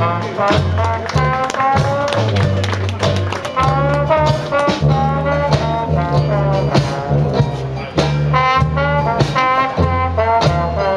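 Dixieland jazz band playing an instrumental passage, with the melody over a steady bass line.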